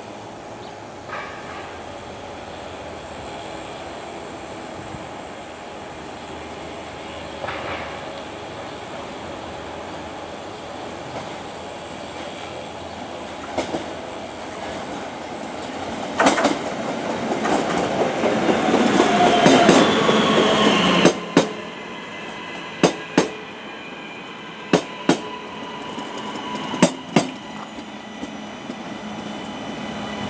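CP Class 3400 electric multiple unit approaching and running into the station, its rumble and motor whine building to a peak with a falling whine as it slows. Then the louder running sound drops away sharply and the wheels give sharp clicks in close pairs over the rail joints as the bogies roll past.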